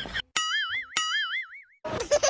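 Cartoon "boing" sound effect, played twice about half a second apart: a plucked twang whose pitch wobbles up and down, the second one ringing on for nearly a second.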